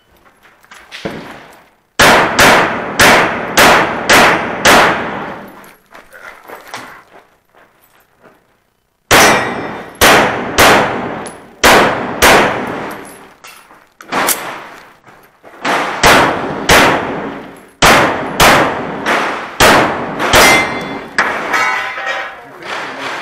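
A handgun firing rapid strings of shots about half a second apart, each with a short echo. A pause of about four seconds separates the first string of about six shots from the rest.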